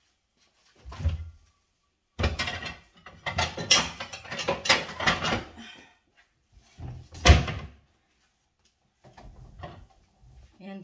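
Kitchen wall cupboard and the items in it being handled: a knock about a second in, a few seconds of clattering and knocking, then one sharp knock, the loudest, as the cupboard door shuts about seven seconds in.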